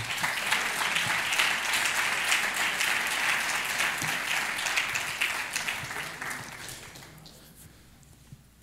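Congregation applauding, a dense patter of many people clapping that dies away over the last couple of seconds.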